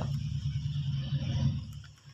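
A low, steady background hum with no speech, dipping briefly near the end.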